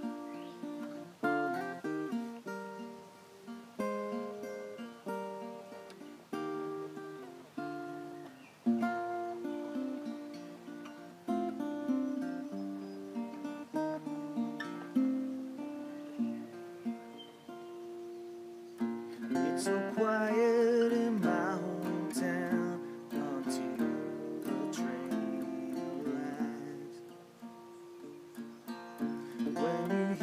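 Recording King ROS-9-FE5-TS acoustic guitar, capoed, playing a picked intro of single notes and chords. A man's singing voice joins the guitar about two-thirds of the way through.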